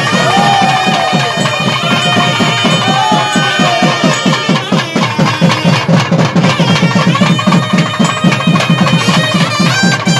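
Loud live festival music: a shrill reed wind instrument sliding between notes over fast, steady drumming at about six strokes a second.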